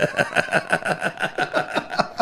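Men laughing, a quick, even run of breathy ha-ha pulses about six a second.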